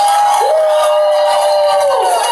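A woman singing a long held note into a microphone, sliding onto a slightly lower pitch and holding it again, over live music and crowd cheering.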